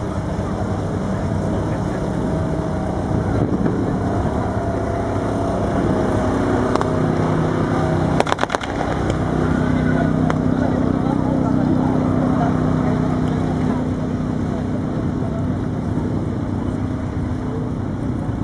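Tank engines running steadily with a deep droning tone, and a short burst of sharp cracks about eight seconds in.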